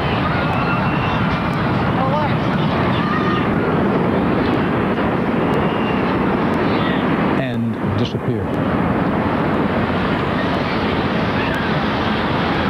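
A steady loud roar from the North Tower of the World Trade Center collapsing, recorded on a street-level camcorder, with bystanders' voices faintly in it. The roar breaks off briefly about seven and a half seconds in.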